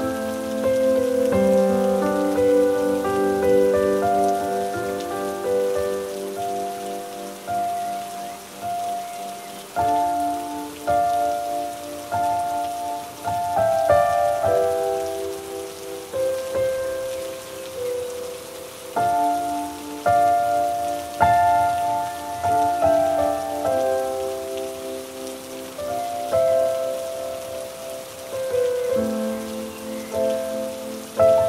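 Steady rain falling, with slow, soft music of held chords playing over it, the chords changing every second or two.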